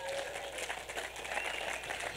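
Congregation applauding: an even, steady spread of clapping.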